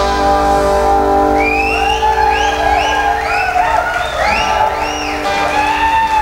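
Live rock band music with the drums stopped: a held electric guitar chord rings on steadily. From about a second and a half in, a run of short rising-and-falling high wails plays over the chord.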